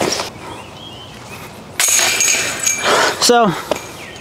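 A backpack-style disc golf bag being handled and rummaged through: a burst of rustling with light clinks, lasting about a second and a half, starting a little before the middle.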